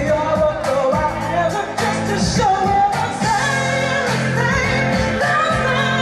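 A live pop-rock band song played through a PA: a female lead vocal sings a melody over electric guitar and a steady beat of about two strokes a second.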